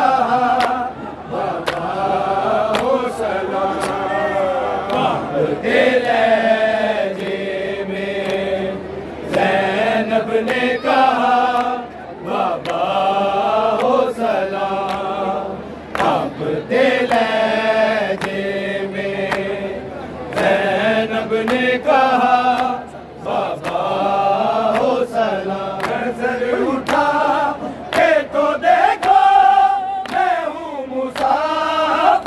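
Men's voices chanting a noha without instruments: a lead reciter sings lines and a seated group joins in unison, in phrases with short breaks between them. Sharp hand strikes sound in time with the chant.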